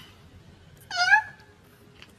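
Domestic cat giving one short meow about a second in, its pitch dropping at the start and then holding.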